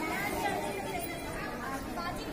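Several people talking at once, an indistinct chatter of voices.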